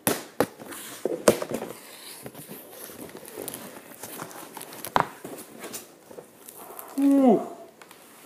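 A large cardboard shipping box being handled and opened by hand: sharp knocks and taps on the cardboard with crinkling of the packing in between. Near the end comes a short vocal exclamation that falls in pitch.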